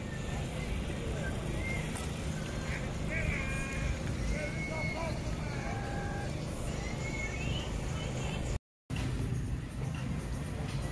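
Small waves of the sea lapping at a stone quay, a steady wash of water with a low rumble of wind on the microphone. Faint distant voices come and go over it in the middle.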